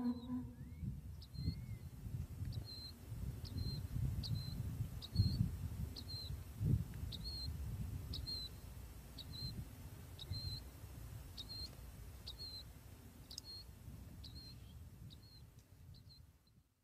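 Faint outdoor ambience: a short high chirp repeating evenly about twice a second, over a low, uneven rumble that fades toward the end.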